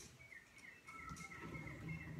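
Faint bird chirping: a quick run of short chirps at one pitch, several a second.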